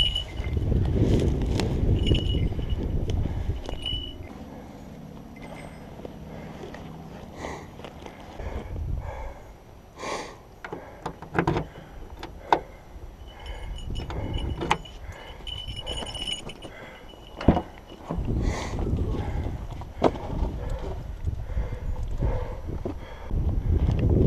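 Wind rumbling on the microphone, then keys jangling and clicks and knocks at the rear hatch of a Toyota hatchback, with one sharp knock near the end of the middle stretch.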